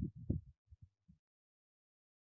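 A man's voice trails off in the first half-second, followed by three faint, short low thumps a little after, then dead digital silence.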